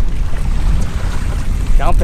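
Wind rumbling on the microphone over choppy open-sea water around a small boat, with no distinct knocks or events.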